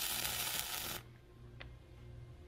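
Flux-core wire welder arc on steel pipe, a steady crackling hiss that stops abruptly about a second in as the trigger is released.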